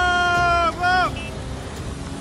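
A person yelling: one long high-pitched shout that breaks off less than a second in, then a short second shout that falls away. Under it, the low rumble of the tractors' diesel engines pulling on the tipping dump truck.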